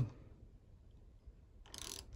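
Mostly quiet, with faint mechanical sounds of a thread tap being turned by hand into an aluminium cam cover, cutting threads for a Helicoil. A short hiss comes near the end.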